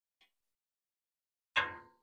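Steel offset smoker lid being lifted: a sudden metallic clank with a brief ringing about one and a half seconds in, after near silence.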